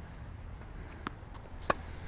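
A tennis ball bouncing on a hard court about a second in, then the louder, sharp pop of a racket striking it with a two-handed backhand.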